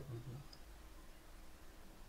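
Mostly quiet room tone with a single faint computer-mouse click about half a second in, after a spoken word trails off at the start.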